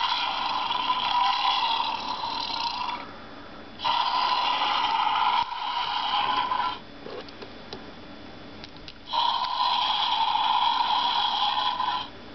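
Mega Bloks electronic dragon toy playing its recorded roar three times, each about three seconds long, set off by pressing the gem on its chest. The roar comes from the toy's small speaker and sounds thin, with little bass.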